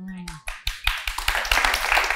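Studio audience applauding. The clapping starts about half a second in and swells into steady applause.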